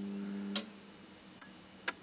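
Steady mains hum from the lamps' high-pressure sodium ballasts, cut off by a sharp switch click about half a second in as the lamps are turned off. A second sharp click follows near the end.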